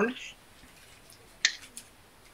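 A single sharp plastic click about one and a half seconds in, followed by a few fainter ticks, from the plastic parts of a Transformers Kingdom Cyclonus action figure being moved and clicked into place as it is transformed.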